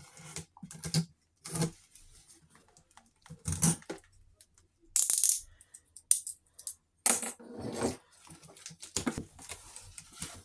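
A cardboard parcel being handled and opened by hand: a string of irregular rustles, scrapes and rattles, with a brief, sharper hiss about five seconds in.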